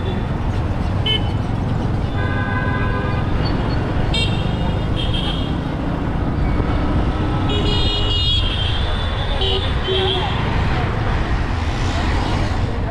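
Busy street traffic: a steady low rumble of engines and road noise, with vehicle horns honking several times, a longer blast about two seconds in and shorter honks around four to five seconds, near eight seconds and around ten seconds.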